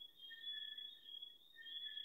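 Near silence: quiet room tone with a faint, thin high-pitched whine that comes and goes in short stretches.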